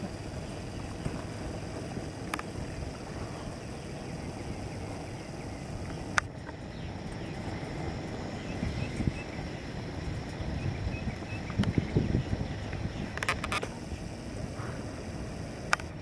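Open-air ambience: a steady low rumble of noise with a few sharp clicks and, about halfway through, faint high bird chirps from below.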